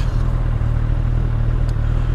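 Kawasaki Z800 inline-four engine idling steadily, a constant low hum while the motorcycle sits stopped.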